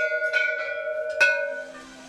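A row of hanging metal temple bells struck one after another by people walking past, one strike per step. There are three strikes, with the ringing tones overlapping and fading out near the end.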